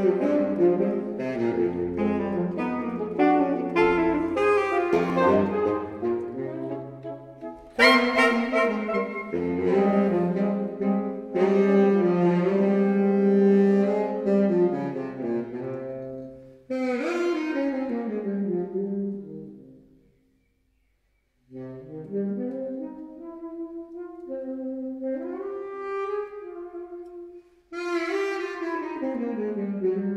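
Saxophone quartet of soprano, alto, tenor and baritone saxophones playing live in close sustained chords. A loud chord enters suddenly about eight seconds in. Later a falling passage dies away into a brief silence, and the lines start up again, climbing.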